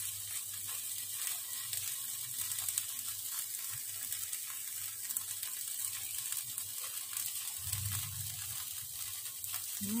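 Marinated meat sizzling on an electric tabletop grill, a steady crackling hiss.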